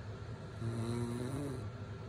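A woman snoring in deep sleep through her open mouth, with steady low rasping breaths. About half a second in comes one louder snore with a droning tone, lasting about a second.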